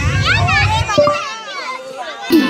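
Several excited, high-pitched voices shouting and calling over one another, while the dance music's low beat drops out a little after a second in.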